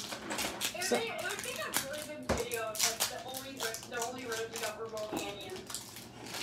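Trading cards being handled and flipped through by hand: a string of small clicks, taps and rustles, with faint voices underneath.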